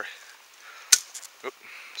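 A single sharp snap about a second in: a dry, hollow stalk of 'wild bamboo' (Japanese knotweed) being broken off by hand.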